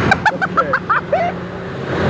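A person laughing in a quick string of short bursts, over a steady low machine hum that carries on alone for the last part.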